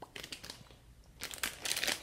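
Clear plastic packaging of a squishy toy crinkling as it is handled: a short rustle just after the start, then a longer run of crinkles in the second half.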